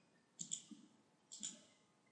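Faint computer mouse clicks in two short groups about a second apart, as wires are placed in the schematic editor.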